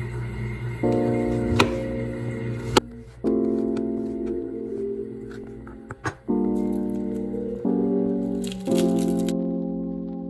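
Background music of slow keyboard chords, each struck and then fading, changing every second or two. A few sharp clicks, typical of a knife tapping a plastic cutting board, come through over it.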